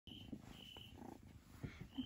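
A kitten purring faintly while being stroked.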